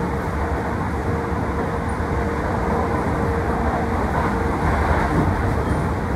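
Steady running noise of a Keisei Main Line commuter train heard from inside the car, an even rumble with a faint steady whine that fades out a few seconds in.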